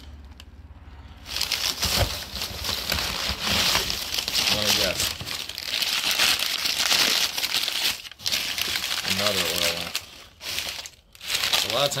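Newspaper and flyer packing paper crinkling and rustling as it is pulled apart and crumpled by hand to unwrap packed items. It starts about a second in and goes on in long stretches with short breaks.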